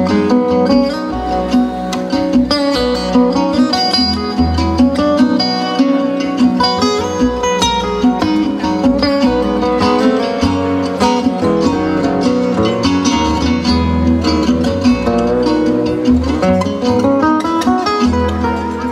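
Live acoustic instrumental break: picked acoustic guitars playing a run of quick notes over plucked upright double bass.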